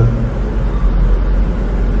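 A steady low rumble with a hiss of background noise, and no voice.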